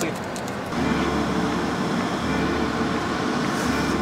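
A car running, a steady engine and road hum that sets in suddenly about a second in.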